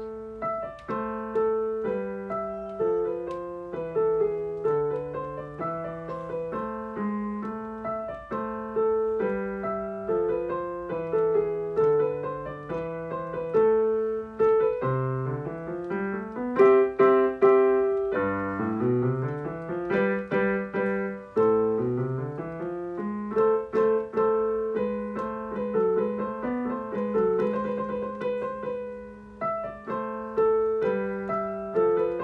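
Digital piano playing a simple medieval-style piece, with a melody over a repeating low bass drone. About halfway through come a few quick upward runs.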